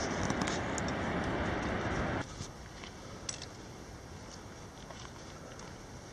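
Steady rushing outdoor ambience that cuts off suddenly about two seconds in, leaving a much quieter hush with a few faint clicks.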